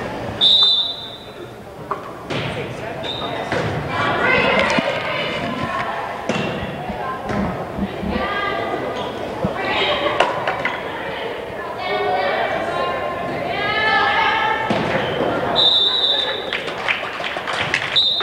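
Referee's whistle blowing for a serve about half a second in, then a volleyball rally in an echoing gym: the ball is struck and thuds on the floor while players and spectators shout. A second whistle near the end stops the play.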